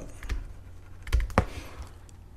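Pen stylus tapping and scratching on a tablet as words are handwritten, with a few sharp taps, the loudest about one and a half seconds in.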